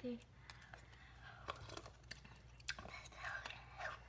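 Soft, whispered voices of two girls with a scattering of small sharp clicks and taps over a steady low room hum.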